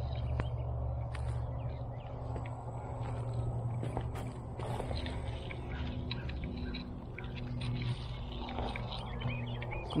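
Outdoor ambience: a steady low hum with light rustling and scattered crunches of footsteps on wood-chip mulch.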